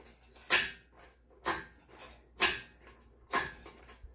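Hydraulic engine hoist being hand-pumped to lift an engine: a short, sharp noise on each stroke of the pump handle, about one a second, four in all.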